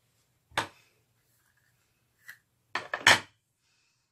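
Handling knocks and clicks: one sharp click about half a second in, then a loud double knock near the end, with quiet between.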